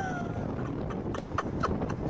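A scuffle at a house's front door: a few sharp, irregular knocks and clatters over a steady noisy hiss.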